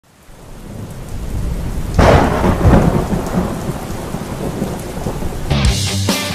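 Thunder-and-rain sound effect: a rain-like hiss builds from silence, and a loud thunderclap about two seconds in rumbles on and fades. Near the end, rock music with electric guitar comes in.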